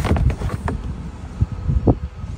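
Wind rumbling on the microphone, with a few light knocks of the plastic upper radiator support cover being handled and lifted off.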